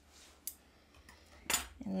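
Metal craft scissors snipping a stamped cardstock flower cut-out: two short sharp clicks about a second apart, the second louder.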